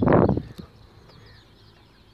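Birds chirping faintly in the background, many short high chirps, after a short loud burst of noise at the very start.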